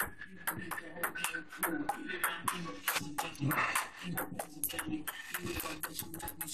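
Table tennis rally: a celluloid ball ticking sharply back and forth off rubber paddles and the tabletop, about two hits a second, over background voices and music.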